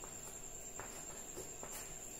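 Faint taps and short scrapes of chalk on a blackboard as an answer is written, a few separate strokes, over a steady faint high-pitched whine.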